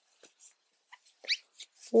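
A brief, high-pitched rising whine a little over a second in, preceded by a fainter short blip; otherwise quiet, with a few faint soft ticks.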